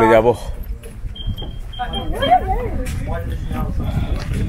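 Voices, one with a wavering, gliding pitch in the middle, over a steady low rumble of movement and wind on the microphone.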